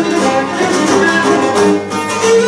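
Live folk string music: a fast bowed melody on a fiddle-type instrument over steadily strummed plucked strings.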